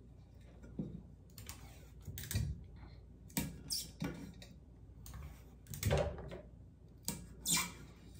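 Light, scattered handling sounds of tape and paper being worked around a stainless steel jar on a tabletop: a dozen or so soft clicks and knocks, a few of them louder, around the middle and near the end.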